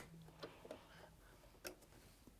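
Near silence with about three faint clicks, the clearest near the end, from handling the work at a domestic sewing machine.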